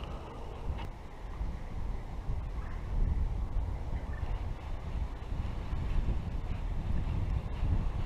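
Wind buffeting the action camera's microphone: a gusty low rumble that rises and falls.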